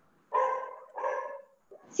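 Two short barks in quick succession, each starting sharply and fading within about half a second.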